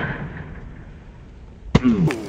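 Inline skate wheels hitting asphalt as the skater lands from a high jump: one sharp knock near the end, followed at once by a short falling vocal cry.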